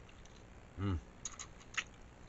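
A short closed-mouth "mm" of enjoyment, then close-up mouth sounds of chewing a pickle roll-up: a quick run of sharp, wet clicks in the second half, the loudest near the end.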